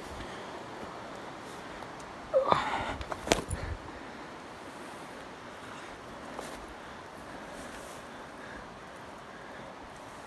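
A hiker pushing through brush and downed wood, with a steady rustle. About two and a half seconds in comes a brief grunt-like voice sound, then a sharp snap about three seconds in, the loudest moment.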